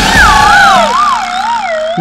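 Comic sound effect: one wavering tone that slides down in pitch, wobbling about four times as it falls, over soft background music.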